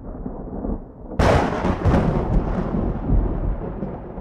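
Thunder sound effect: a low rumble, then a sudden loud crack about a second in that rolls away in a long rumbling decay.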